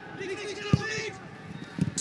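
A brief call from a man's voice over the pitch, with a single sharp knock of a football being kicked about three quarters of a second in.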